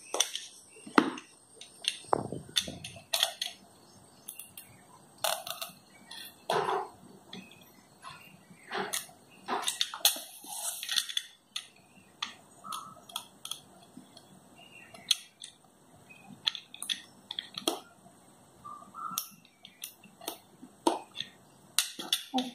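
Utility knife cutting open a cardboard phone box: irregular crackles, scrapes and clicks of the blade and packaging, coming in short clusters with brief lulls between.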